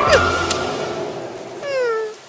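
Cartoon sound effects over fading background music: a quick falling tone just after the start, then near the end a short, meow-like cry that glides down in pitch.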